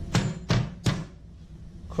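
Three sharp knocks of a chef's knife against a plastic cutting board holding garlic cloves, about a third of a second apart in the first second.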